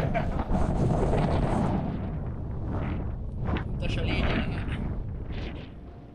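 Wind buffeting a close camera microphone in a low rumble, with a man's voice breaking through in short fragments. It fades out near the end.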